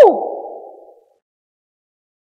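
A woman's brief vocal swoop, its pitch rising then sliding steeply down. The room's echo dies away over about a second, then there is silence.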